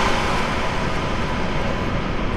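A steady low rumbling drone, with a hiss that fades away over the first second.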